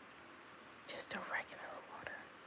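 A woman's voice saying a quiet word or two about a second in, over faint steady hiss.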